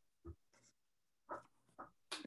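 Near silence on a video-call line, broken by three faint short noises: one about a third of a second in and two close together near the end.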